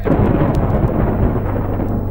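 A sudden loud thunder-like rumbling crash that slowly fades, a sound effect in an early-1990s electronic trance track, over a steady low synth bass drone, with faint vinyl surface clicks.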